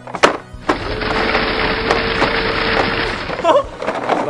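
The plastic drum of a toy cement mixer truck spun by hand: a click, then about two seconds of steady grinding rattle with a faint hum running under it.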